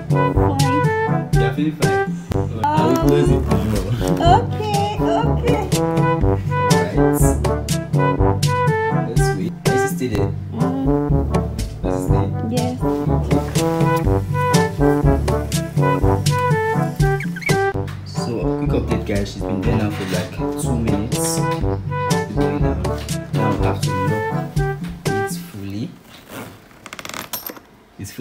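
Background music: held melody notes over a stepping bass line, dropping in level near the end.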